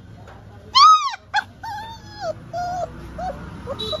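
Labrador puppy whining and yelping: one loud, high, arching yelp about a second in, a short yelp right after, then a string of shorter falling whimpers. It is complaining at being kept from its food bowl.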